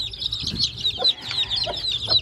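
A brood of young chicks peeping continuously, a dense stream of rapid, high-pitched cheeps.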